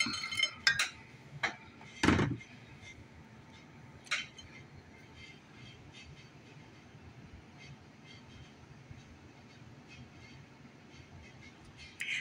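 A utensil clinking and knocking against a plate as diced hash-brown potatoes are spooned onto it: several clinks in the first two seconds, the loudest just after two seconds, and one more at about four seconds, then only faint room noise.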